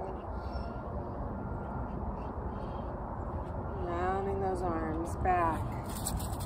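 Steady low background rumble, with a long wavering voice-like call about four seconds in and a short falling one just after.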